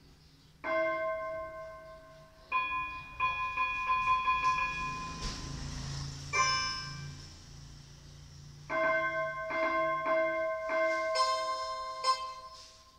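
Portable electronic keyboard played in a bell-like voice: single ringing notes and short repeated figures with pauses between them, and a brighter-sounding note near the middle.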